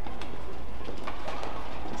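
Shuttlecock struck back and forth by badminton rackets, a few sharp clicks over a steady low arena hum.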